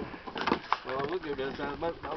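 People talking on a fishing boat, with two sharp clicks or knocks about half a second in.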